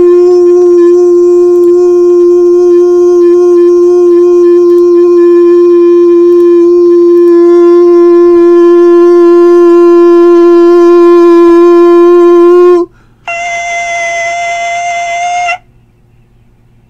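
A man's voice holding one long, loud, steady "yo" note that slides up at the start and is held for about thirteen seconds before cutting off. After a short breath he holds a second, higher and quieter note for about two seconds.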